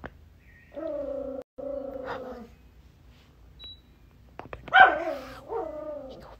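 A woman whimpering in exaggerated fright at a power cut in the dark: two drawn-out, high whines, the second, about four and a half seconds in, the louder.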